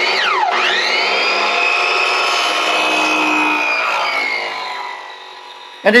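Miter saw with an abrasive cutoff wheel cutting fiberglass (FRP) U-channel: the motor's whine drops sharply in pitch just after it starts, climbs back and holds steady through the cut, then winds down over the last second or two. The motor bogs down as the cutoff wheel burns its way through the fiberglass.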